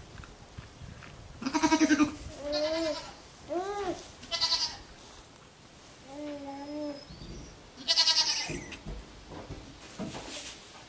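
Goats bleating: two loud, wavering bleats, one about a second and a half in and one near the eight-second mark, with several shorter pitched calls between them.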